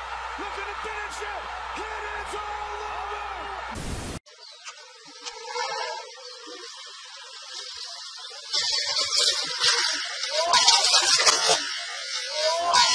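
Fight-broadcast audio: a man's voice over arena noise with a low steady hum, cut off abruptly about four seconds in. Then an amateur phone recording with hiss and voices, growing louder about two-thirds of the way through.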